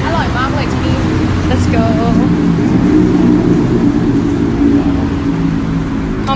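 Busy street noise with a steady low rumble of road traffic and snatches of voices nearby.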